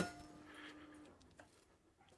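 A sharp snap as the main isolator switch in the meter cabinet is thrown off, with brief ringing after it, then a faint hum that stops about a second in and a small click soon after: the backup system changing the house over to battery power, a changeover heard as a clunk.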